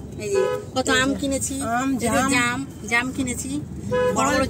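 Voices talking inside a car in traffic, with a vehicle horn tooting briefly outside about half a second in.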